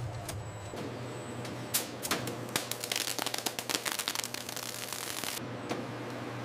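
Conveyor and packaging machinery: a steady low hum with a few separate clicks, then a fast, dense run of clicking and rattling from about halfway through that stops abruptly near the end.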